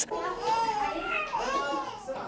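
Background voices of young children, several overlapping, with high voices rising and falling.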